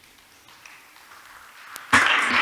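Quiet hall room tone with faint rustling of papers as a speaker gathers them at a lectern, then a single sharp click just before the end.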